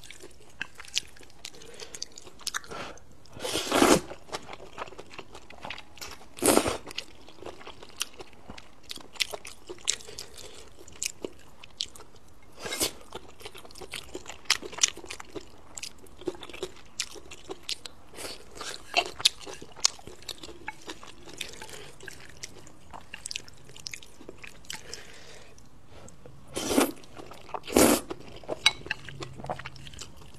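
Close-miked chewing and slurping of thick, spicy stir-fried rice noodles: wet mouth clicks and smacks throughout, with louder slurps about 4 and 6.5 seconds in and twice near the end.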